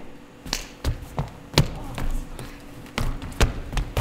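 Scuffling and footsteps on a wooden stage floor: a string of irregular thuds and knocks, the loudest about a second and a half in and again about three and a half seconds in.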